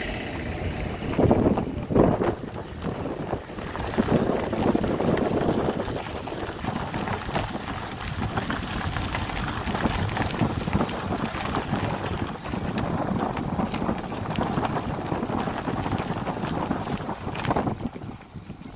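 Wind buffeting the microphone over the steady running noise of a moving vehicle, with two louder gusts a second or two in.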